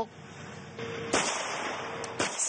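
A single gunshot about a second in, fired on a night shooting range, with a hiss that hangs on for about a second after it.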